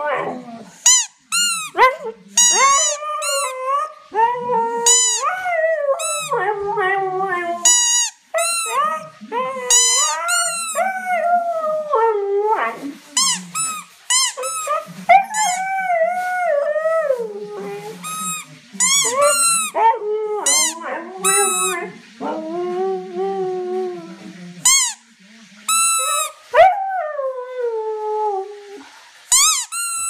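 Siberian husky howling along in long, wavering, rising-and-falling notes to a rubber hamburger squeaky toy. The toy is squeezed again and again in short, sharp squeaks.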